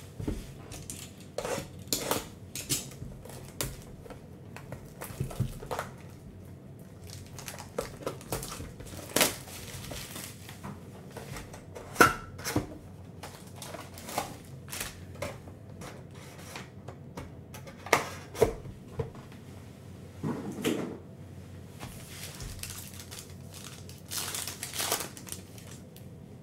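Hands handling a cardboard trading-card hobby box and its foil packs: scattered clicks, knocks and crinkles of cardboard and wrapping, the sharpest about halfway through. Near the end comes a short tearing rasp as a foil pack is ripped open.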